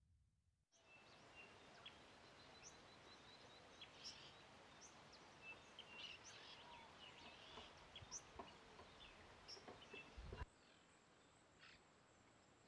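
Faint high chirps and short call notes of small songbirds over an outdoor background hiss, including a quick run of evenly spaced notes a few seconds in. About ten seconds in, the background cuts to a quieter one with a steady thin high tone and one more short call.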